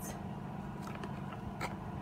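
A few faint clicks and scrapes of a spoon against a plastic bowl as cereal is stirred, over a steady low hum.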